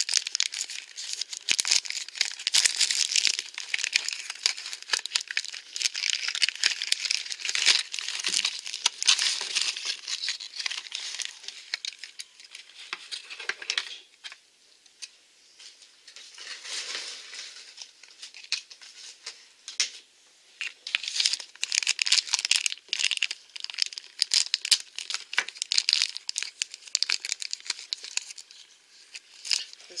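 Plastic blind-box toy packaging crinkling and tearing as it is opened by hand, with a quieter lull midway.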